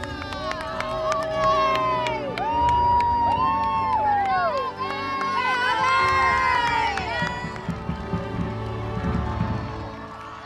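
Crowd of spectators cheering and shouting for runners, many voices overlapping in long, drawn-out shouts, with a low rumble beneath.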